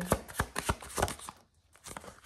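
A tarot deck being shuffled by hand: a quick run of card clicks and slaps for about a second and a half, then a short pause and one more snap near the end.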